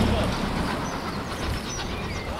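Steam locomotive 60103 Flying Scotsman, a three-cylinder LNER A3 Pacific, running away into the distance, heard as a steady noisy rumble. A low hum fades out about half a second in, and faint voices sit under it.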